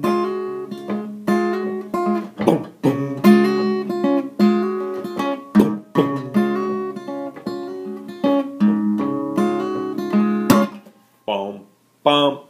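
Acoustic guitar fingerpicked in a blues pattern: plucked treble notes over a steady bass line, with a few sharp knocks. The playing stops near the end.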